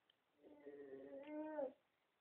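An 8-month-old baby's drawn-out, whiny fussing vocal. It is a single long, meow-like sound starting about half a second in, and it drops sharply in pitch as it ends.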